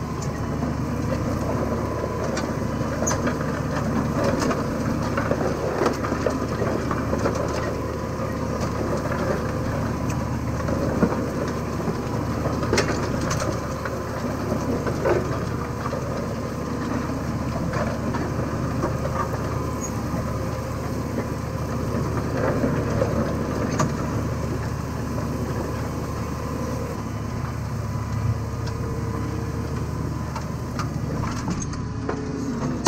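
Tractor engine running steadily under load while pulling a reversible plough, heard from inside the cab, with scattered clicks and knocks from the plough working through the soil.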